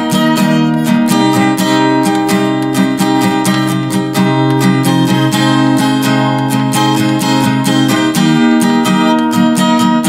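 Acoustic guitar strummed in a steady rhythm with no singing, the chord changing about a second in and again near eight seconds.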